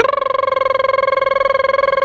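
A man's lips vibrating rapidly while he hums one steady note, a buzzing lip trill held for a couple of seconds.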